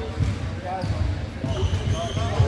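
A basketball dribbled on a hardwood gym floor by a free-throw shooter before the shot, with indistinct voices in the background.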